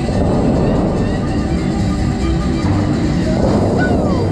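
Music playing over the loudspeakers of the Bellagio fountain show, loud and steady, mixed with the rushing spray of the water jets.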